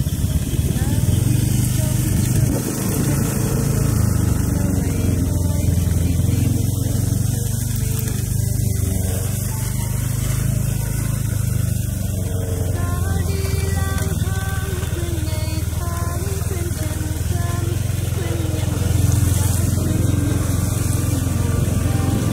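Small motorbike engine running steadily at low speed along a rough dirt track, with wind noise on the microphone.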